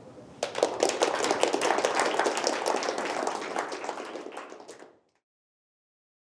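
Audience applauding, starting about half a second in and cutting off abruptly about five seconds in.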